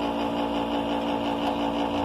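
A machine running with a steady, even hum.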